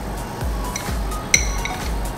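A metal spoon scraping grated coconut from a bowl into a plastic blender jar, with soft handling knocks and one sharp clink that rings briefly about a second and a half in.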